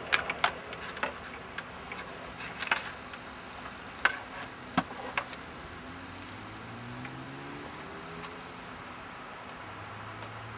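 A handful of sharp clicks and knocks as a plastic router and its cables are handled and the router is set down on a wooden table. In the second half a faint low drone slowly rises in pitch.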